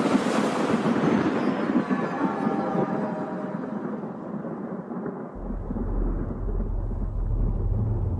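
Thunderclap sound effect: a crack followed by a long rolling rumble that slowly fades. A low steady hum comes in about five seconds in.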